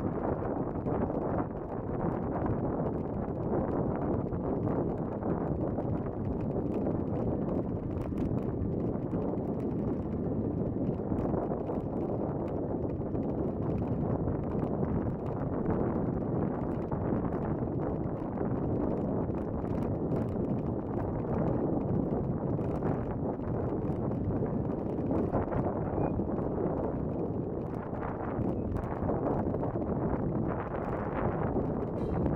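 Riding a bicycle along an asphalt path: steady wind rushing on the microphone and tyre noise, with frequent small clicks and rattles.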